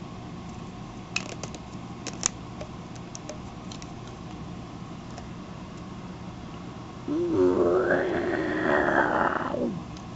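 Small clicks from a plastic Galoob Action Fleet TIE Interceptor toy being handled, then, about seven seconds in, a much louder buzzing, warbling sound lasting over two seconds that rises in pitch at its start and falls away at its end.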